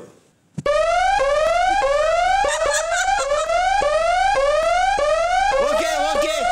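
Electronic alarm-style buzzer, a game-show sound effect, sounding a rising whoop over and over, about one every 0.6 seconds. It starts under a second in after a moment of silence, and a man's voice comes in over it near the end.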